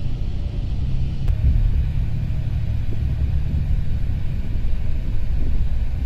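Steady low rumble of a Volvo 9600 coach under way, heard from inside the passenger cabin: engine and road noise.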